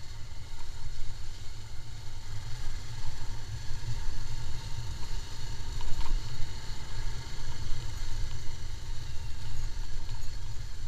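Motorcycle engine running steadily at low road speed, under a heavy low rumble of wind buffeting the microphone.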